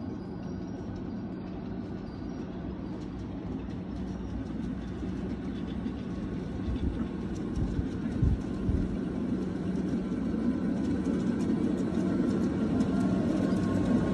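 A miniature 7.5-inch gauge ride-on train approaching on its track, its running rumble growing steadily louder.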